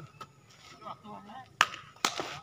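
A single sharp crack of a sepak takraw ball being kicked, about one and a half seconds in, with faint voices before it.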